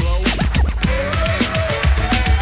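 Old-school hip hop mix: a vinyl record scratched on a turntable, in quick sliding pitch sweeps over a bass-heavy beat.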